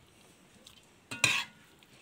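Metal spoon stirring bitter gourd in a stone-coated pot. A little past halfway comes one brief, loud metallic clatter of the spoon against the pot, with faint rustling of the food around it.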